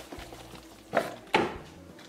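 Quiet handling of kitchen items. A plastic bottle of charcoal lighter fluid is set down on a granite countertop, giving two light knocks about a second in.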